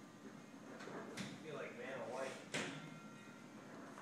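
Two light, sharp knocks, about a second in and again past halfway, with faint indistinct voices in between.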